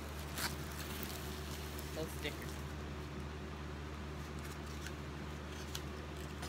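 Quiet handling of a diamond-painting canvas under its clear plastic film, with a light click about half a second in and a few faint crinkles, over a steady low hum.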